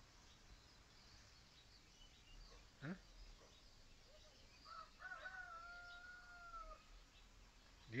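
Faint outdoor quiet with scattered faint bird chirps. About halfway through, a distant rooster crows once: a few short notes, then one long held note of about two seconds.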